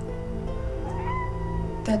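A cat gives one drawn-out meow about halfway in, rising and then slowly sinking, over a steady, held background music score.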